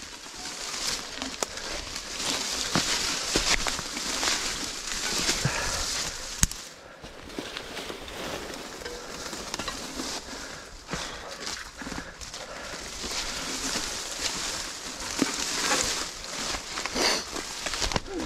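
Mountain bike riding through woodland undergrowth: tyres rolling over leaf litter and twigs and brush scraping along the bike, with many scattered sharp clicks and knocks.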